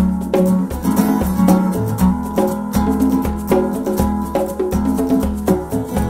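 Instrumental band passage: acoustic guitar playing chords over a steady conga rhythm with other hand percussion, no vocals.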